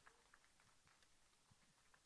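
Near silence: the sound drops out almost completely between stretches of speech.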